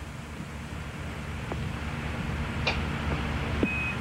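Low steady rumble and hiss of an open mission radio channel, slowly growing louder, with a few faint clicks. Near the end comes one short, steady, high beep: a NASA Quindar tone keying the start of a Capcom transmission to the crew.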